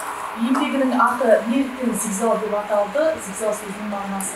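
A woman speaking in short phrases, the words not made out.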